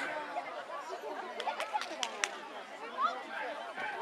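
Background chatter of many voices talking at once, with a few sharp clicks about halfway through.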